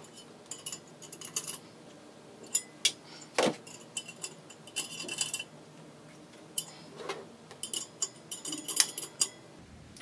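Metal nuts being tightened on the threaded rods of a glass-and-metal still column: irregular small metallic clicks and clinks, with one brief ringing clink about halfway through.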